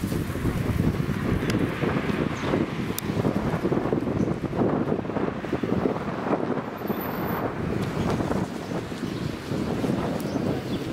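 Wind buffeting a handheld camera's microphone: a loud, uneven low rumble.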